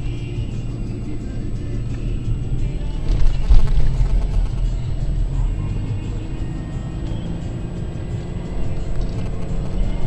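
Music playing over the low rumble of a car driving over sand dunes, with a louder jolt about three and a half seconds in.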